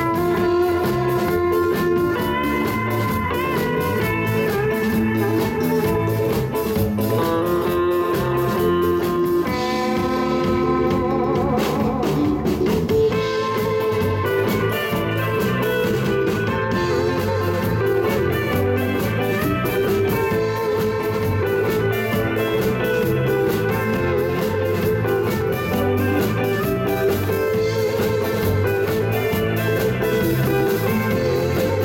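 Live instrumental rock band playing: a lead electric guitar carries the melody over drums, bass and rhythm guitar. Near the middle the lead notes waver and bend, with cymbal crashes.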